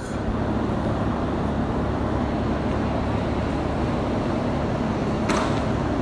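Steady background noise with a low, even hum and no distinct event, with a short hiss near the end.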